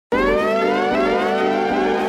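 Opening of a hip hop track: a sustained, siren-like tone glides upward over the first second and then holds over steady chords, with no drums yet.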